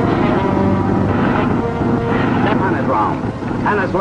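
Old film soundtrack: a propeller airplane's engine droning under dramatic orchestral music, with a man's voice coming in near the end.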